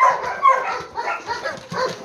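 A dog giving several short, high-pitched calls in quick succession.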